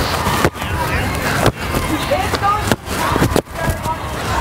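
Indistinct chatter of young children's voices, short high snatches rather than clear words, over a steady outdoor background noise.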